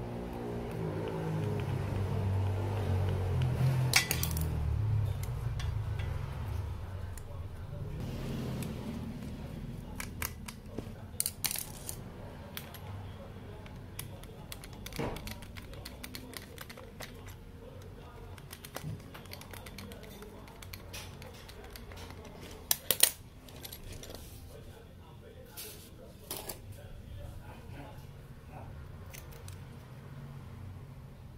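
Scattered metal clicks, taps and clacks of a power window regulator and its motor being handled and screwed together by hand. The sharpest knocks come about four seconds in, around eleven and fifteen seconds, and as a pair about 23 seconds in. A low background sound sits under the first several seconds.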